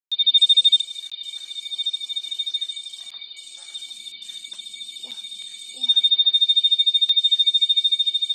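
Tree cricket singing a steady, high-pitched, fast-pulsing trill from a hole in a leaf; the leaf around the hole acts as a baffle that makes the song louder. The song drops in level about a second in and grows loud again near six seconds.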